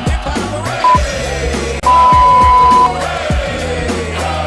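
Interval-timer beeps marking a Tabata work/rest switch: a short beep about a second in, then a long, loud beep of about a second. All of it plays over upbeat workout music.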